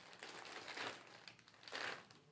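Plastic packaging crinkling faintly as a slit-open mail package is handled, in irregular rustles with a short louder one near the end.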